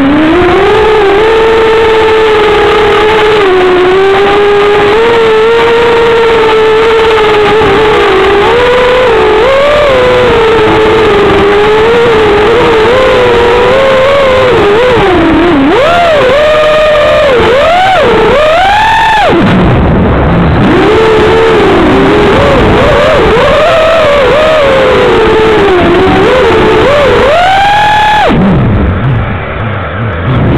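FPV racing quadcopter's brushless motors whining, heard from the drone's own onboard camera. The pitch holds fairly steady at first, then swoops up and down quickly several times as the throttle is punched and cut, dropping low briefly around the middle and again near the end.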